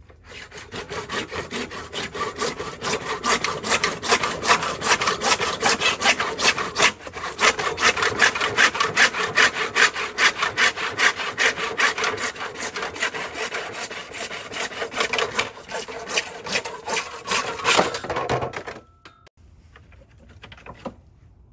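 Lenox 18-inch PVC/ABS hand saw cutting through a plastic hose-reel frame with quick, even back-and-forth strokes. The sawing stops abruptly near the end as the piece is cut through.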